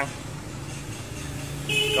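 Steady low background rumble of street traffic, with a short high-pitched horn beep starting near the end.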